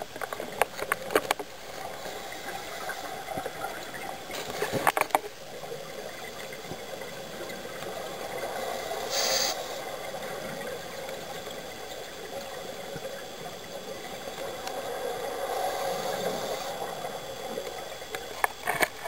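Scuba breathing heard underwater: a steady rush of regulator exhaust bubbles, with a brief hiss of breath through the regulator about nine seconds in. A few sharp clicks and rattles come in the first second and again around the fifth.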